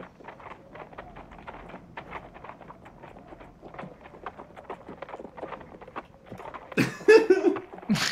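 Donkey hoofbeats clopping at a walk as a cartoon sound effect: a steady run of light, evenly spaced hoof clops. A loud burst of voice breaks in near the end.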